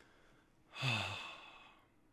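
A man sighs about a second in: a short low voiced note that falls in pitch, then a breathy exhale that fades away.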